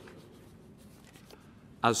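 A quiet pause in a man's formal address with faint room tone and a few soft rustles. His voice resumes near the end.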